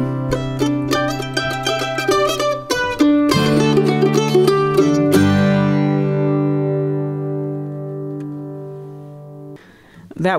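Acoustic guitar and mandolin playing the closing instrumental bars of an Americana song: about five seconds of quickly picked notes, then a final chord left ringing and fading for about four seconds before it is damped just before the end.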